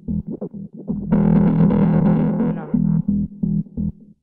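Looped synth bass line from an Access Virus B playing back in a house production: short, choppy pitched notes, with a brighter, distorted swell from about one second in that fades out before the three-second mark, as from a dubby delay effect (FabFilter Timeless 2).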